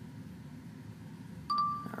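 iPhone Voice Memos stop-recording chime: one short, clear electronic tone about one and a half seconds in, after faint room hiss.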